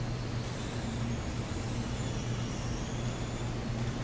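Steady low hum with a fainter overtone and a light hiss, unchanging throughout: the background hum of the hall and its sound system while no one speaks.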